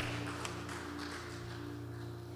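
A worship band's chord held steady and slowly fading, a few sustained low notes ringing together.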